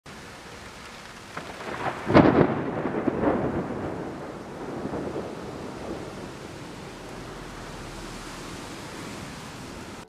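A thunderclap with a sharp crack about two seconds in, rumbling on in a few swells for about three seconds, over a steady hiss of rain. It is a recorded storm sound laid under a channel's intro title card.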